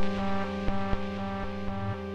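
Ambient electronic music from iOS software synthesizers and sequencers: a steady low drone under repeating sequenced synth notes, with a few sharp percussive clicks.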